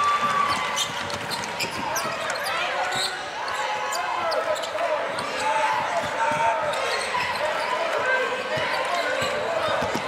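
Basketball being dribbled on a hardwood court, heard as repeated sharp bounces, over the murmur of crowd and player voices echoing in an arena.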